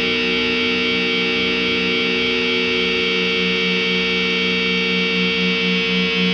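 Doom/sludge metal: a single distorted electric guitar chord is held and rings out steadily, with no drum hits.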